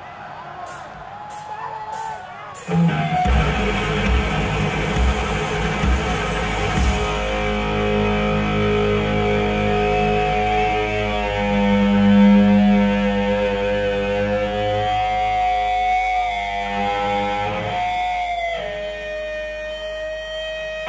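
Live punk rock band starting a song: after a quiet couple of seconds, loud distorted electric guitar and bass come in, then long held, ringing guitar notes sustain before the playing changes near the end.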